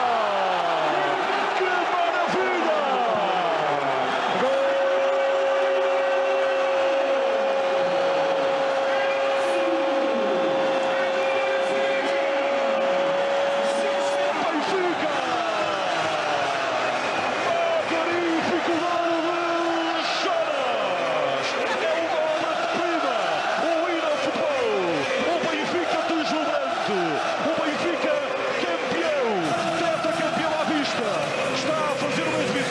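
A large football stadium crowd cheering and singing in celebration of a goal, many voices overlapping with shouts that fall in pitch. A single steady tone rings out over the crowd from about four seconds in for about ten seconds.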